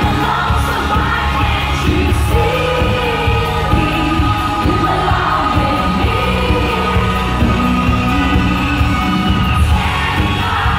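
Live pop band with a female lead singer performing a song, loud and steady, heard from among the audience.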